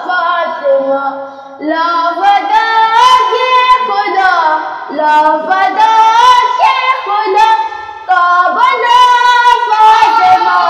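A boy singing a manqabat, an Urdu devotional poem in praise of Fatima, solo and without accompaniment, in long melodic phrases with ornamented, wavering held notes and two short pauses for breath.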